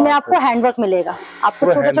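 A person speaking in Hindi, with a short hiss about a second in.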